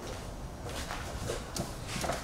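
Quiet workshop background with a few faint knocks and some shuffling as an intake manifold is carried and handled by hand.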